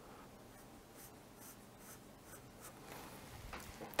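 Felt-tip marker drawing a curve on graph paper: faint scratchy pen strokes, a little louder toward the end.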